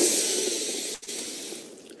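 A loud breathy hiss from the film clip's soundtrack starts suddenly, breaks briefly about a second in, then carries on and fades away.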